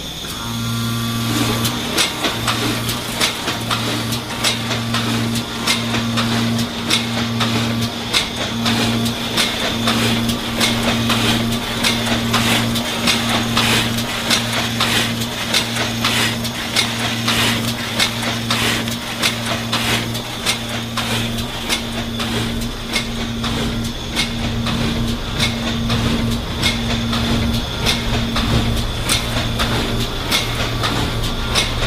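Bartelt pre-made pouch filler/sealer starting up and running at about a hundred bags a minute, with its mechanical drive, chain and clip conveyor making rapid rhythmic clicking and clacking. Under it runs a steady electric hum that breaks off briefly again and again, along with a thin high whine.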